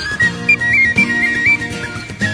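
A marching band's fifes or flutes playing a high, quick melody over drum beats, about two a second.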